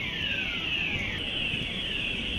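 Department store fire alarm sounders going off, a repeating tone that falls in pitch about once every 0.6 s and blurs into a steadier tone in the second half.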